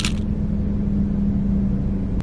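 Car engine running, heard from inside the cabin: a steady low rumble with an even hum. There is a short sharp click right at the start.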